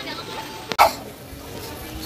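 Faint voices in the background, broken a little before a second in by a sharp click and a brief loud burst of noise.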